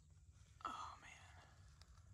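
Near silence, broken once a little over half a second in by a brief breathy whisper from a man.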